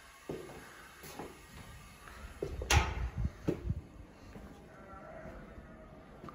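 A run of clicks and knocks as a uPVC balcony door is handled and opened and someone steps through, with the loudest sharp clunk about three seconds in.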